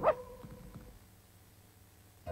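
A single short cartoon dog yip at the very start, over the last held notes of a jingle that fade away within about a second.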